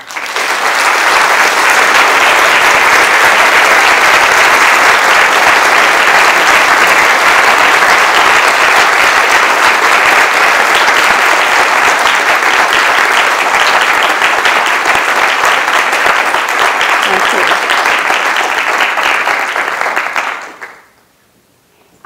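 Audience applauding loudly and steadily, thinning to more separate claps and dying away near the end.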